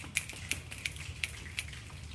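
Audience finger snapping, the poetry-café way of applauding a poem just read: a string of sharp snaps, about three a second.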